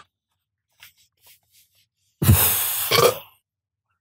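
A few faint soft clicks, then a loud burp about two seconds in, lasting just over a second, after gulping soda through a straw.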